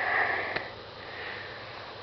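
A person sniffing or breathing in through the nose close to the microphone, fading out early, then a single sharp click about half a second in.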